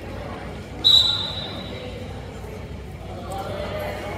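Referee's whistle, one short sharp blast about a second in, signalling the start of the wrestling bout. A murmur of spectators' voices fills the gym around it.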